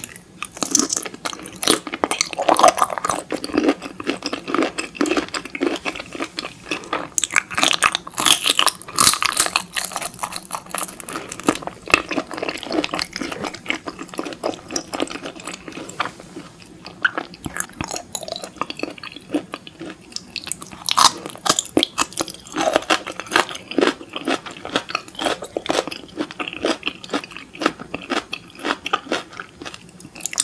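Close-miked chewing of raw shrimp: a dense run of small clicks and smacks, busiest in the first half, with a quieter stretch in the middle before another burst.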